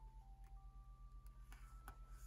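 Faint background music: a few soft held notes changing pitch. It comes with several light clicks from plastic binder pocket pages and photo cards being handled.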